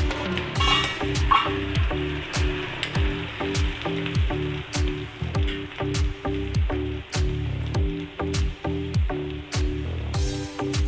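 Sliced onions and curry leaves sizzling as they fry in oil in a pan, with a spatula stirring them briefly about a second in. Background music with a steady beat plays over it.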